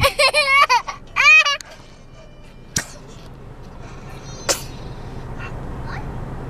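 A young child laughing in high, squealing bursts for about a second and a half, then quiet, with a single click near the middle and a brief sharp noise a little later.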